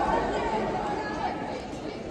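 Chatter of many voices in a large tournament hall, with no single clear speaker.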